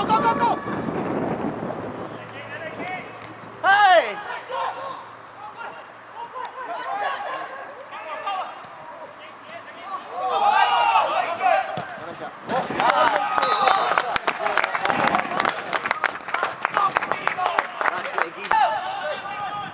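Footballers and spectators shouting across an outdoor pitch during a match, with one loud call about four seconds in and a burst of excited shouts near a goalmouth chance at about ten seconds. From about twelve seconds on a dense run of sharp crackles fills the rest.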